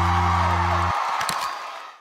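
Live band music holding a final sustained chord. The low bass notes stop abruptly about halfway through, and the higher part rings on with a few light strokes before fading out at the end.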